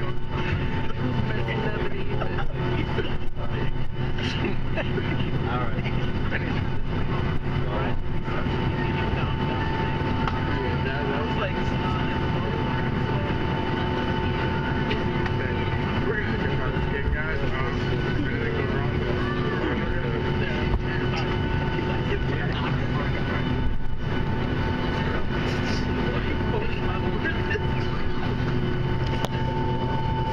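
Boeing 757 cabin noise while taxiing after landing: a steady engine hum with a few constant tones and a faint high whine, holding an even level throughout.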